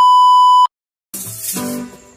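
Steady, loud TV test-pattern beep, the tone that goes with colour bars, held for under a second and cut off suddenly. After a brief silence, music begins.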